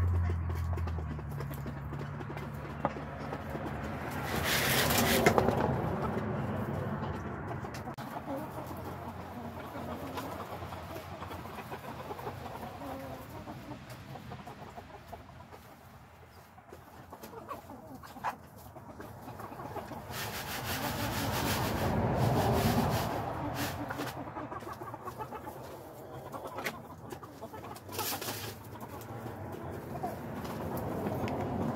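Backyard chickens clucking and calling in the coop, with two louder stretches of a couple of seconds each, about four seconds in and again about twenty seconds in.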